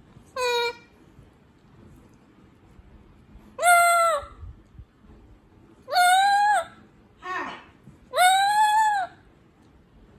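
A red-plumaged lory parrot calling. There is one short call at the start, then three loud, drawn-out squawks about two seconds apart, each rising a little then falling, with a fainter, rougher squawk between the last two.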